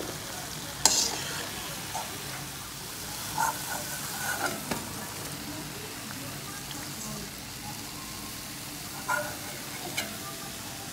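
Sweet mathri dough frying in hot refined oil in a steel kadhai on a low flame: a steady sizzle of bubbling oil, with a sharp click about a second in and a few lighter clinks of a slotted steel spoon later on.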